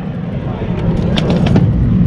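Steady wind rumble buffeting the microphone, with a couple of faint clicks about the middle.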